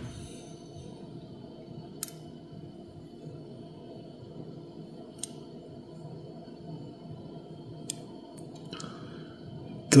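A few sharp small clicks spread through the seconds, and a brief scrape near the end, as a dimple key is slid into the brass plug of a disassembled lock cylinder and the parts are handled, over a faint steady hum.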